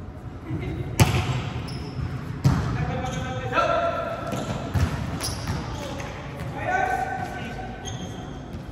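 A volleyball being struck during a rally, with two sharp smacks about a second in and a second and a half later and a lighter hit near five seconds, echoing in a large gym. Players call out between the hits.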